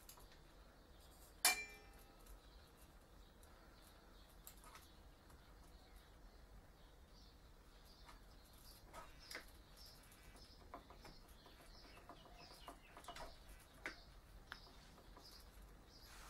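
Mostly near silence, with faint scattered clicks and taps as the rotor head of an RC helicopter is handled and slid down onto its main shaft. One short, sharp clink with a brief ringing tone about a second and a half in.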